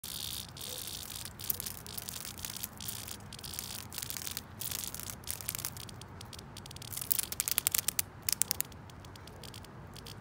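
A cicada's high-pitched distress buzz, coming in choppy bursts as a wasp grapples with it and stings it. A faster run of sharp clicks comes between about seven and nine seconds in.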